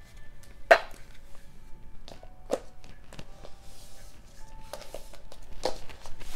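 Tarot cards and deck handled on a table: a few sharp taps and knocks, the loudest about a second in, with faint music holding steady notes underneath.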